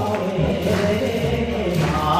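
Music: a Japanese song with voices singing over a steady instrumental backing.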